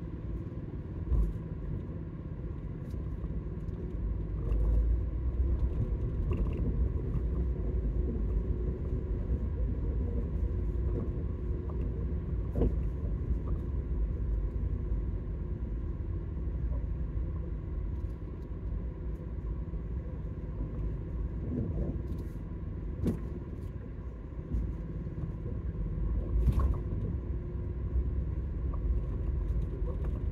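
Car driving, heard from inside the cabin: a steady low rumble of engine and road noise, with a few brief knocks.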